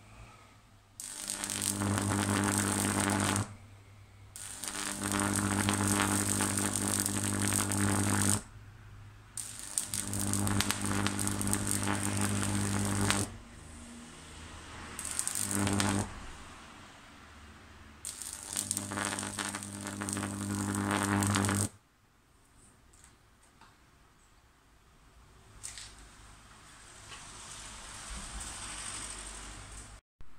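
High-voltage electric arc from a microwave-oven-transformer generator, struck between an iron nail and an iron plate: a loud, low mains buzz with a harsh crackle, in five bursts of one to four seconds with short gaps, the last ending about 22 seconds in.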